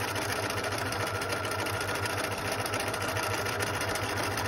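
Domestic electric sewing machine stitching steadily at a fast, even rate, with an embroidery foot fitted and the feed dogs dropped for free-motion embroidery.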